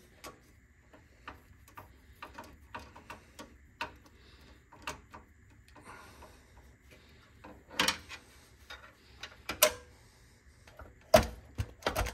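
Scattered small clicks and taps of metal and plastic parts handled inside a PC case as expansion-slot covers are worked loose with a screwdriver and a large graphics card is fitted, with a few sharper clicks in the last few seconds as the card is pushed into its slot.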